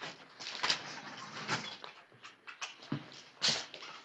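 A chair scraping and creaking as someone gets up from a desk, with scuffs and knocks of movement on a wooden floor and a louder knock near the end.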